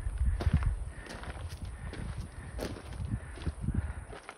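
Footsteps on a loose, rocky gravel trail: irregular crunching steps, louder in the first second and softer after.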